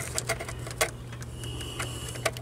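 Scattered light clicks and taps as a hand fumbles behind a Jeep Wrangler YJ's metal dash speaker grille, feeling for the speaker's mounting studs, over a steady low hum.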